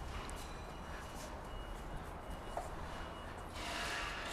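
Faint workshop background noise: a steady low hum and hiss with a thin, faint high tone and a few light clicks. The hiss grows a little louder near the end.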